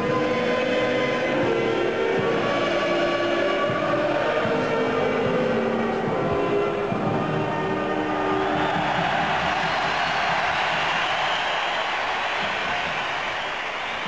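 A national anthem played in a stadium closes on long held chords over the first half. About eight seconds in, a large crowd takes over with cheering and applause.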